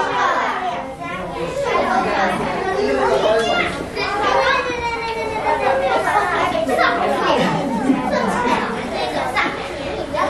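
Many children talking at once in a classroom: a continuous, overlapping chatter of young voices with no single speaker standing out.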